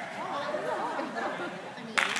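Background chatter of people talking in a large hall, ending in a single sharp crack.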